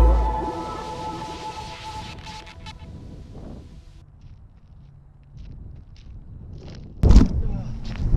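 Hip hop music fading out over the first few seconds, then a quiet stretch with a few faint ticks. About seven seconds in, sudden loud wind buffeting and handling noise on the crashed drone camera's microphone.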